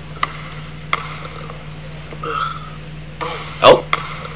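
A basketball bouncing twice on an indoor court floor, two sharp knocks in the first second, over a steady low hum. A short, loud vocal burst comes near the end.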